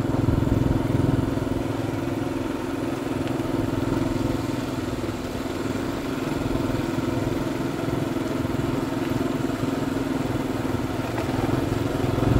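Motorbike engine running at a steady cruising speed while riding, a constant even hum, with wind and road noise over it.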